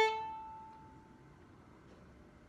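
Violin's A string ringing on and fading away over about a second after a bowed note stops.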